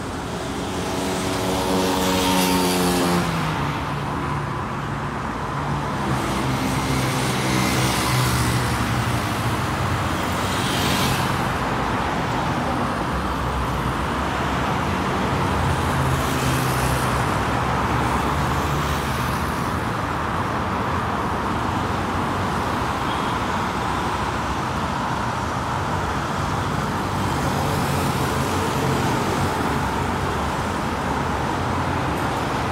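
Steady traffic on a multi-lane road, with cars passing one after another. Near the start one vehicle's engine note drops in pitch as it goes by.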